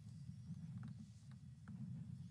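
Quiet room tone: a low steady hum with a few faint soft clicks, three in under a second about halfway through.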